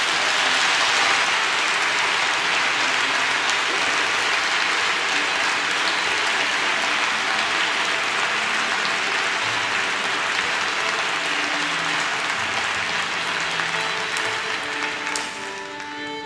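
Concert hall audience applauding, steady and full, dying away near the end as pitched notes from the orchestra begin to sound under it.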